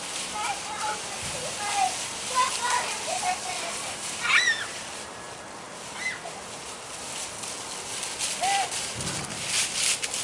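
Dry fallen leaves rustling and crunching as young children scoop them with plastic shovels and tramp through them. Short high calls and squeals from the children come over it, the loudest about four seconds in.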